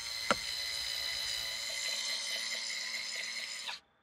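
Cordless electric screwdriver running with a steady whine as it turns the BMW E36 convertible top's latch drive through its Allen socket in the windshield header, with one click shortly after the start. It stops suddenly just before the end.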